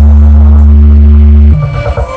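Loud electronic dance music played through a large outdoor sound system, its heavy bass holding one deep note for about a second and a half before the beat breaks up near the end.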